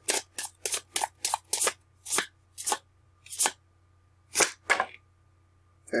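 A deck of tarot cards being shuffled by hand: a run of quick swishes, about four a second at first, slowing to single swishes spaced further apart, then stopping about five seconds in.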